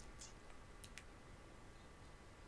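Near silence: quiet room tone with a few faint, short clicks in the first second.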